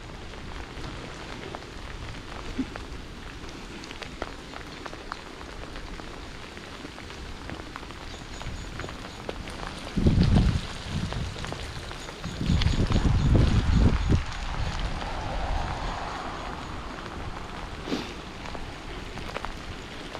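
Bicycle rolling along a wet path in the rain: a steady hiss of tyres on the wet surface and falling rain. Two bouts of low rumbling, one short about ten seconds in and a longer one from about twelve and a half to fourteen seconds.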